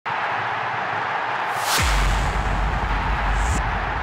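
Intro music sting: a noisy bed with a whoosh sweeping through about a second and a half in, then a deep bass hit that carries on under it, with a short bright accent near the end.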